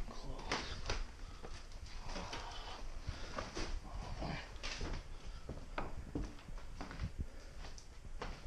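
Scattered knocks, rustles and light thumps of someone moving about a cluttered room and handling junk, over a low rumble of body-worn camera handling noise.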